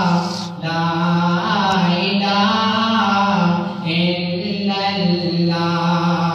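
A young man's solo unaccompanied voice singing a devotional Urdu poem into a microphone, in long held notes that bend in pitch, with short breaths between phrases.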